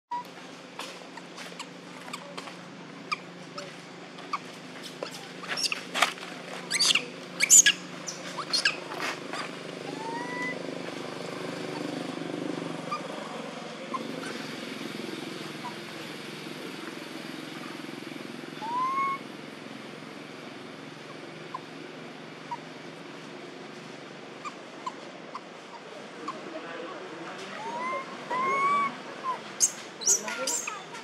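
A few short squeaky calls that rise and fall in pitch, typical of young macaques: one about ten seconds in, one near the middle and two close together near the end. They sit over a steady low hum, with a flurry of sharp clicks and knocks between about five and nine seconds in.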